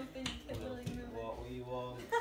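Faint voices talking in a small room.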